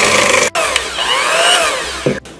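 Electric hand mixer running, its beaters churning a thick persimmon batter in a stainless steel bowl. The motor's pitch rises and falls with the load, with a brief break about half a second in.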